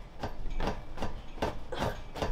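A string of soft, irregular knocks and rubbing, several to the second.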